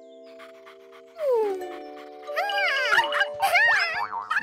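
Cartoon soundtrack: held music chords, a sliding downward note with a burst of noise just after a second in, then a run of high, squeaky cartoon creature cries that rise and fall, with small clicks.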